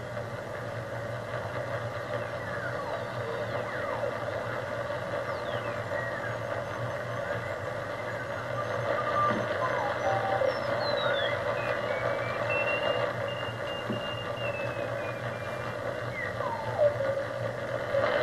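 Heathkit HR-10B vacuum-tube receiver being tuned across the 40-metre amateur band, heard through an external speaker. There is steady band hiss, with whistling tones that slide up or down in pitch as the dial sweeps past signals, and Morse code (CW) beeps at a steady pitch that grow stronger near the end.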